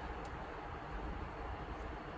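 Steady low rumble of a car engine running, heard from inside the cabin, with a faint hiss above it.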